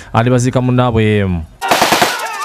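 A man speaking, then about one and a half seconds in a sudden burst of rapid, dense clattering cuts in and carries on.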